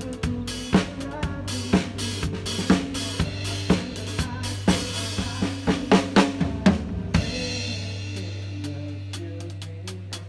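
Drum kit played along with a backing track: bass drum and snare hits about once a second with hi-hat between, over a held bass note. About seven seconds in the beat stops and a cymbal rings out and fades, then the drumming comes back at the very end.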